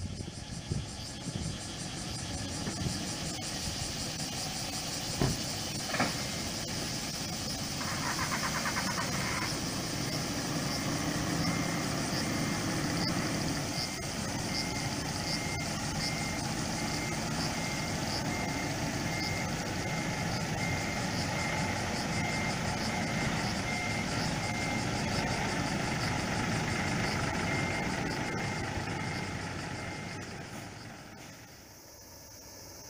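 Large diesel tour coach running and maneuvering at low speed, its reversing beeper sounding in a steady repeating beep through the second half. There are two sharp clicks a few seconds in.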